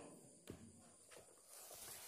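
Near silence: room tone with a faint click about half a second in and a few fainter taps later.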